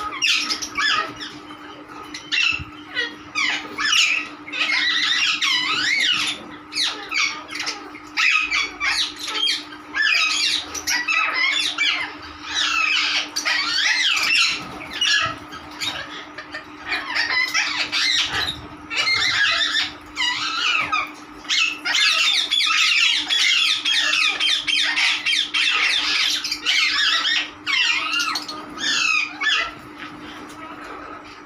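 A mixed flock of sun conures and ring-necked parakeets squawking and chattering: many shrill, overlapping calls with only brief pauses.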